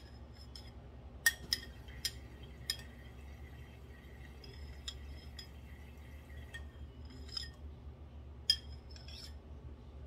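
A spoon clinking against a ceramic bowl and the pan as soaked shiitake mushroom slices are laid in the pan: about seven sharp clinks scattered through, the loudest just over a second in and near the end, some leaving a ringing tone for a few seconds. A low steady hum lies underneath.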